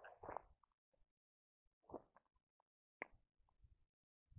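Near silence, with a few faint short scuffs of footsteps on dirt and gravel, about two and three seconds in.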